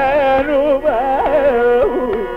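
Carnatic classical music in raga Shri, from a live concert recording: a melody line sliding and oscillating through heavy gamaka ornaments over the steady drone of a tambura.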